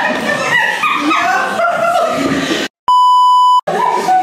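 Voices talking and laughing, then near the end a word is cut out by a steady, high edited-in bleep lasting under a second, with a moment of dead silence either side: a censor bleep over a spoken word.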